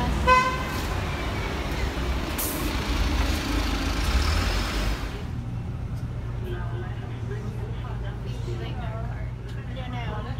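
Street traffic with a low rumble from an articulated city bus pulling up, a short vehicle horn toot just after the start, and a brief hiss about two and a half seconds in. About halfway through the sound cuts to a bus cabin: the bus's steady low engine hum heard from inside, with faint voices.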